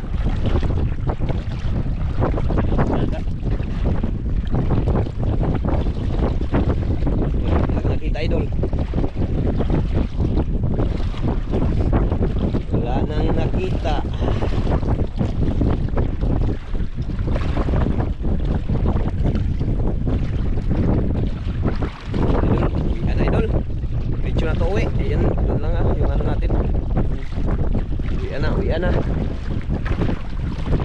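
Wind buffeting the microphone, a steady low rumble throughout, over water sloshing and splashing around legs wading through shallow sea.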